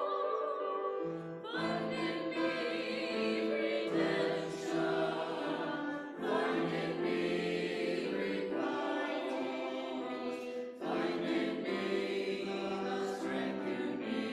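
A small church choir of men's and women's voices singing a choral anthem in parts, with held notes and short breaks between phrases every few seconds.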